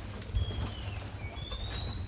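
Footsteps along a corridor with a thud a third of a second in, and thin, high squeaks: one falling in pitch near the start, a longer one rising near the end. Shoe soles are squeaking on the floor.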